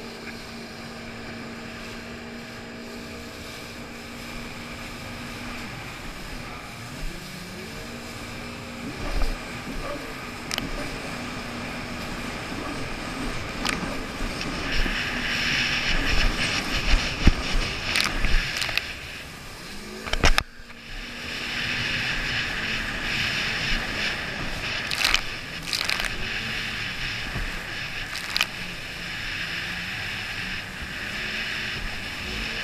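Jet ski engine running, holding a steady note at first and then rising and falling in pitch as the throttle changes. From about halfway a loud rush of water spray and wind over the camera joins in, cutting out briefly about two-thirds of the way through.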